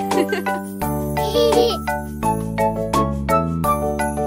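Children's song music: a melody over a bass line that changes note every second or so, with a regular beat.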